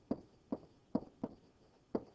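A stylus tapping and clicking on a tablet screen while handwriting digits and letters, about five short taps.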